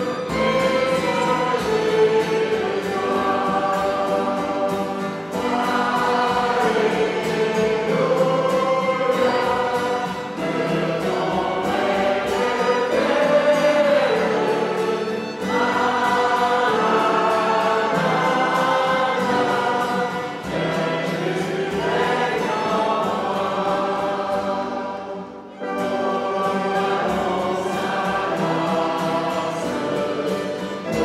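Congregation singing a worship song together, in long continuous melodic phrases, with a brief drop between phrases about twenty-five seconds in.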